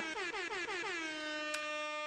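A horn-like alert sound effect: one pitched tone that glides down for about a second, then holds a steady note.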